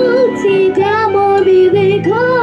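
A young girl singing a melody with a wavering, held voice over instrumental accompaniment.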